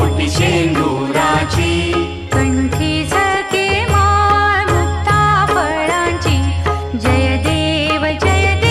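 Devotional aarti song to Lord Ganesh: a voice singing a chanted melody over a steady percussion beat and a low accompaniment.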